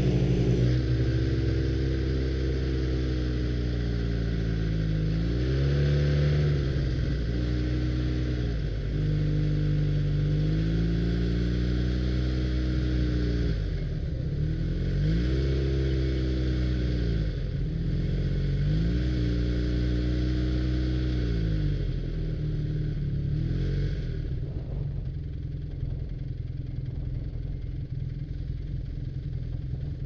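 Snowmobile engine running under way, its pitch rising and falling over and over as the throttle is opened and eased. About three quarters of the way in, the engine note drops away and runs lower and quieter as the sled slows behind the others.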